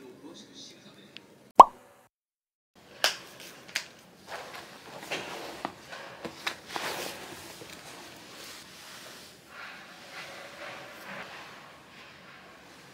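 A metal spoon taps once against a glass dessert bowl, a sharp tap with a brief ring, about a second and a half in. After a short silence, soft fabric rustling and light clicks come from clothes and a canvas tote bag being handled.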